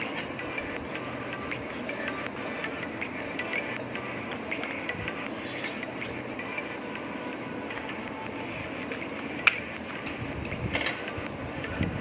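Scissors snipping through folded paper, with the paper being handled, and one sharp click about nine and a half seconds in.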